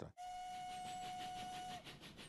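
Steam locomotive whistle blowing one long, steady note that cuts off sharply near the end, over a background of steam hiss.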